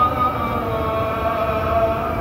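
A muezzin's voice chanting the Dhuhr adhan over the mosque's loudspeakers, holding one long drawn-out note that wavers slightly in pitch.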